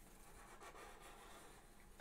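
Near silence, with the faint scratch of a felt-tip marker drawing a curved line on paper.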